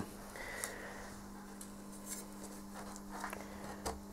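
Faint rubbing and light ticks of a hand handling wooden glazing beads on a door panel, over a steady low hum.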